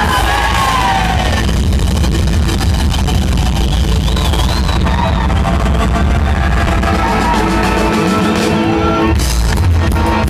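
A full live ska-rock band playing loud through a big PA, with voices shouting and singing over it. Near the end the bass falls away for about a second, then the full band with drums comes crashing back in.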